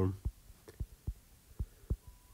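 Stylus tapping and knocking against a tablet's glass screen during handwriting: about five short, soft, low knocks at irregular intervals.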